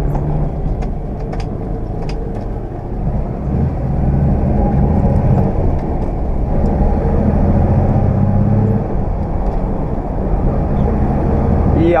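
Ford Aero Willys's six-cylinder engine pulling in third gear, heard from inside the cabin along with road noise. The engine note gets louder about four seconds in and eases off near nine seconds.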